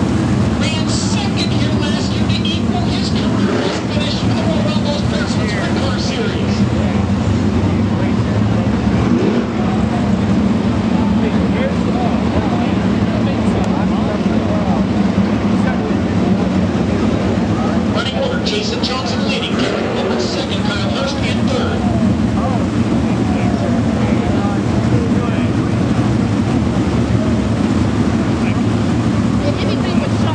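Sprint car engines running at a steady idle, several together, with no revving, under the chatter of nearby spectators.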